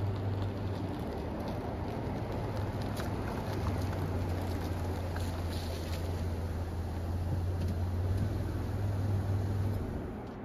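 Chevrolet sedan's engine running with a steady low hum as the car rolls in on wet gravel and stops. The engine cuts off just before the end.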